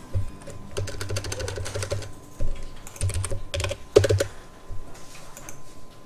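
Clicking of a computer keyboard and mouse: a quick run of keystrokes about a second in, then scattered single clicks.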